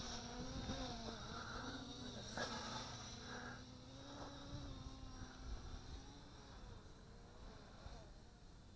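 MJX Bugs 2W quadcopter's brushless motors and propellers buzzing in flight. The pitch wavers slightly as the throttle changes, and the buzz fades as the drone flies away.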